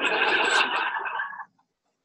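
Large audience laughing together, the sound cut off abruptly about a second and a half in.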